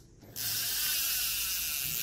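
A size-5000 carbon-bodied spinning fishing reel cranked by its wooden handle: the rotor and gears give a steady whirr that starts about a third of a second in.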